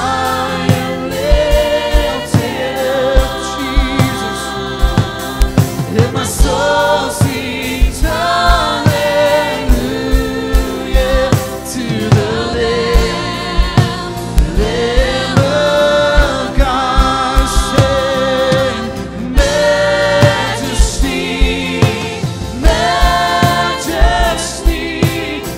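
Live contemporary worship music: several voices singing a hymn-like chorus together over keyboard and guitar, with a steady beat throughout.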